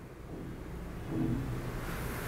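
Faint low rumble of background noise, with a brief faint hum about a second in.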